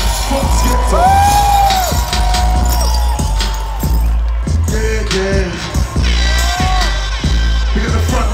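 Grime beat played loud over a festival PA, with a heavy steady bass, a long held high synth note and several gliding tones.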